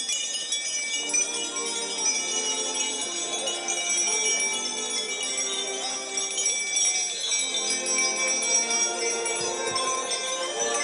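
Altar boys' hand-held clusters of altar bells shaken hard, ringing in a continuous jangle, with a brass band playing held notes beneath.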